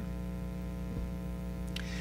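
Steady electrical mains hum with a stack of evenly spaced overtones, and a soft tap about a second in.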